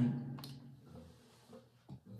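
Mostly quiet room tone in a small room: a spoken word trails off at the start, then one faint click about half a second in and a soft low sound just before the end.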